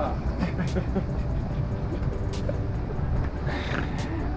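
Street ambience: a steady low rumble of passing traffic, with faint voices and music in the background.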